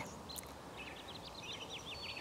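Faint birdsong in the background: a quick run of short chirps in the second half, over a low steady outdoor hiss.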